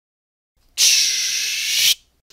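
Sci-fi sliding-door sound effect: one steady pneumatic hiss of about a second, starting a little before the middle and cutting off abruptly, as the bridge door opens.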